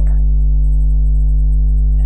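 A loud, steady low hum with a stack of even overtones and a faint broken high whine above it, unchanging throughout.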